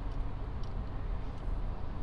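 Steady low background hum with a faint even hiss, and a few faint ticks from a small toy car being handled.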